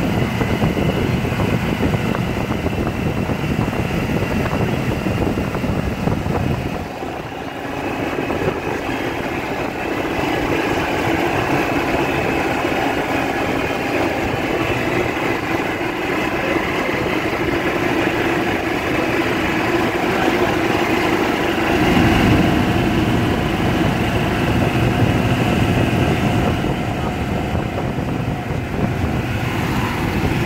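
Golf cart driving along a road: a steady motor hum with road and wind noise. A low rumble drops away about seven seconds in and comes back about twenty-two seconds in.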